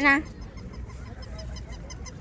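The end of a woman's loud, drawn-out call to a small child, cutting off a fraction of a second in, followed by a low background of faint distant voices.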